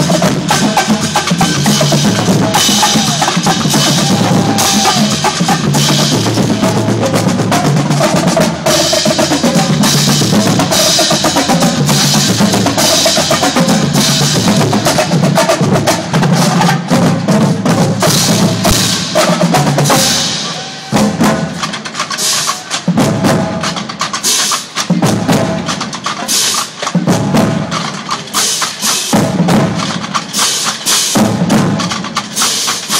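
Marching drumline playing a loud cadence on snare, bass and tenor drums with crash cymbals. About 20 seconds in the playing thins into separate hits with short gaps.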